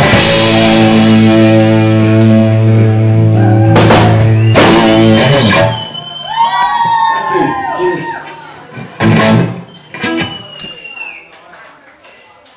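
Live rock band with electric guitars and drums ending a song on one held, ringing chord, with loud cymbal crashes at the start and just before the cut-off about six seconds in. Voices then shout and cheer, with a couple of sharp knocks.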